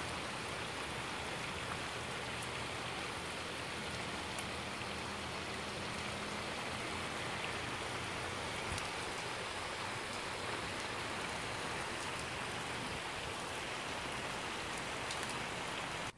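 Steady rain falling on a swimming pool and wet stone pavers, an even hiss with scattered drop ticks.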